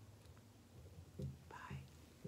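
Quiet room, then about a second in a soft, hushed voice: faint whispered or murmured sounds.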